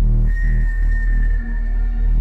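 Bass-heavy electronic music played loud through a car audio system, with two DB Drive WDX G5 10-inch subwoofers driven by a Rockford Fosgate 1500bdcp amplifier at 2 ohms. Deep bass notes pulse steadily under a held high synth note.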